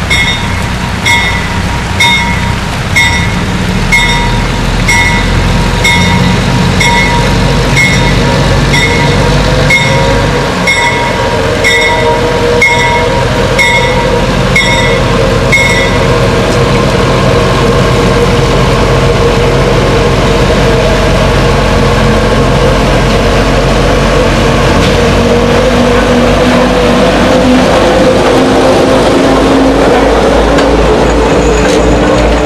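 GE 44-tonner diesel locomotive approaching and passing with its passenger train, the engine drone building and rising in pitch in the second half. A bell rings about once a second until about halfway through, then stops as the locomotive reaches the camera.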